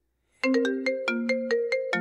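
Phone ringtone for an incoming call: a quick melody of short chiming notes that starts about half a second in.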